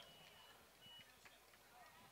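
Near silence, with a faint thin high tone twice in the first second.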